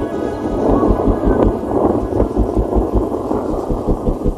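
Wind buffeting the microphone from a moving vehicle, with a low rumble that pulses a few times a second.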